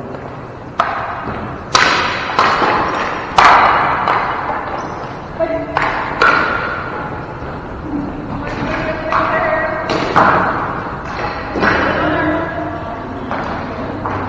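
Ball hockey play on a gym floor: about ten sharp knocks of sticks hitting the ball and the hard floor, each echoing in the large hall. Players call out in between.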